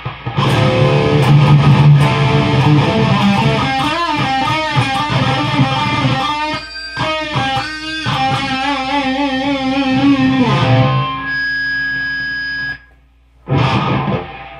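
Distorted electric guitar from an ESP guitar played through a Behringer TO800 Vintage Tube Overdrive pedal into a Peavey 6505 Plus tube amp, demonstrating the pedal's overdrive tone. The guitar plays about ten seconds of fast notes with bends and vibrato, then a held chord rings out and cuts off suddenly.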